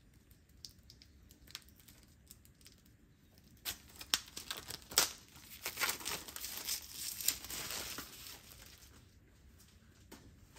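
Plastic shrink-wrap being torn and peeled off a boxed album: a few faint crackles, then from about four seconds in a dense run of crinkling and tearing with sharp crackles, easing off near the end.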